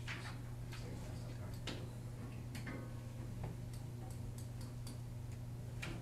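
Scattered light clicks and taps, irregularly spaced, over a steady low electrical hum.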